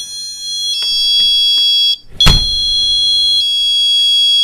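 Doberman Mini Entry Defender door alarm in chime mode, sounding a high two-note electronic chime twice, set off by the door opening and breaking the magnetic contact. A loud knock comes about two seconds in, just as the second chime starts.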